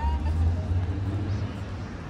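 City street sound: a passing road vehicle's low engine rumble, loudest in the first second and a half, then easing off.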